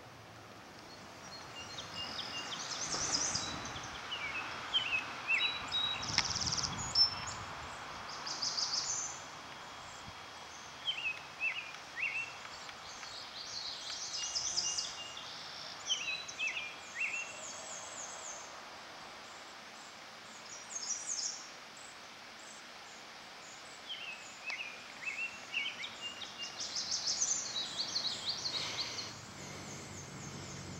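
Songbirds singing in short, repeated chirping phrases, several overlapping, over a steady outdoor background hiss.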